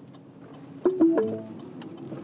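Turn-signal indicator ticking steadily in a pickup's cab. About a second in, a short electronic chime of a few notes sounds.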